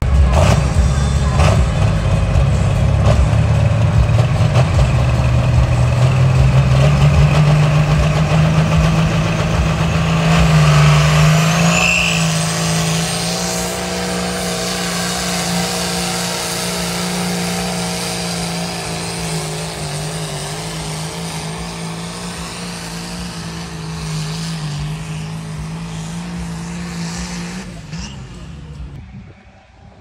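John Deere 4320 pulling tractor's diesel engine at full power on a tractor-pull run, its note climbing over the first dozen seconds and then held high and steady as it drags the weight down the track. The sound fades away near the end.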